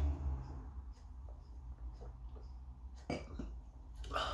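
A man drinking beer from a glass: a few faint swallowing sounds, then a short, sharper mouth or breath sound about three seconds in as he finishes the sip.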